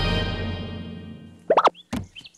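The last chord of a cartoon theme tune dying away, then a quick pair of cartoon plop sound effects about a second and a half in.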